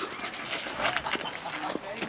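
A dog's short, faint excited whines and whimpers as it runs to greet its owner, over rough background noise and faint voices.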